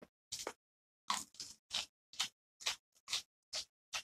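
A person chewing crisp raw vegetables: a run of short crunches, a little more than two a second.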